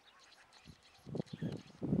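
An animal calling: a quiet first second, then a quick run of short calls from about a second in.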